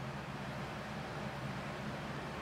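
Room tone: a steady low hum with an even hiss, unchanging throughout.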